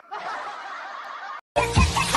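A woman's snickering laugh, cut off abruptly by a brief dead silence; then loud music with a heavy bass starts near the end.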